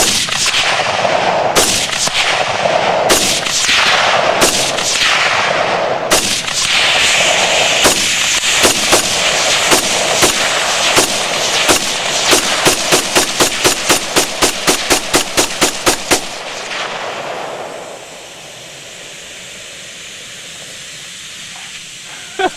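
Rifle shots with echo: irregular at first, then a fast regular string of about three shots a second for roughly ten seconds. After the firing stops, a steady hiss of propane venting from the punctured tank, which drops in level a couple of seconds later and keeps going.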